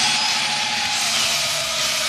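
A loud, steady roaring noise with a hiss and a few faint held tones, cut in abruptly as an inserted sound effect in a radio football broadcast.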